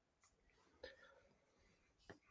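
Near silence: the quiet pause of an online video call, with one faint, brief sound a little under a second in.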